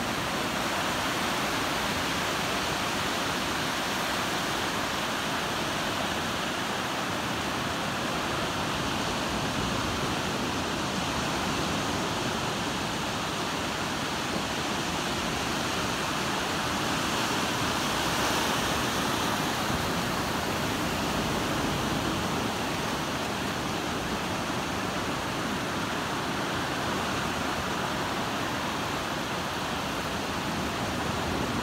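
Ocean surf washing in on a sandy beach: a steady rushing noise that swells slightly about halfway through.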